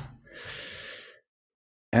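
A person breathing out into a close microphone, a short, even breath of just under a second.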